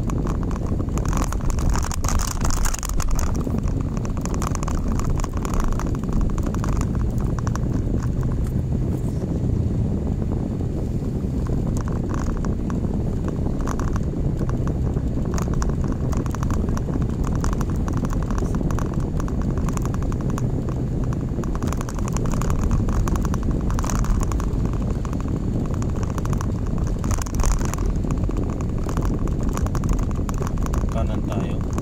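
A car driving along a city street, heard from inside the cabin: a steady run of engine and tyre noise, low and even.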